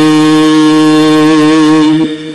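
A chanted line of Gurbani ending on one long, steady held note, which stops abruptly at the end.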